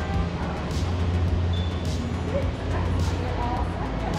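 Background music with a steady low bass, under faint voices.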